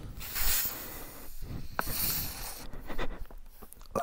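Tyre-repair insertion tool forcing a sticky rubber string plug into the puncture of a motorcycle's rear tyre with twisting pressure. It makes a soft, uneven scraping and rubbing of rubber, with a short click nearly two seconds in.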